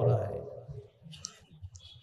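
A pause in a man's speech: his last word trails off, then it goes quiet apart from a few faint short clicks.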